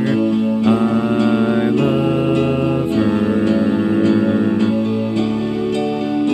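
Instrumental passage of a dreamy piano arrangement of a synth-pop song: sustained chords ringing and changing about once a second.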